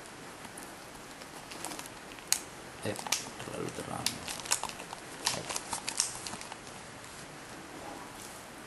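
Irregular sharp clicks and crinkling crackles, thickest in the middle, with brief low voice murmurs around the middle.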